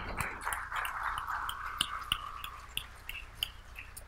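Audience applauding: dense clapping that thins over about three seconds into a few scattered claps.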